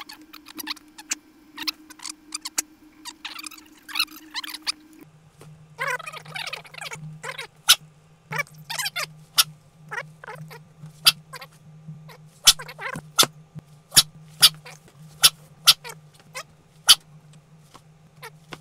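A sound-designed film soundtrack. A low steady drone drops to a lower pitch about five seconds in, under scattered sharp clicks that come thicker in the second half, with a few short stretches of scratchy, chittering noise.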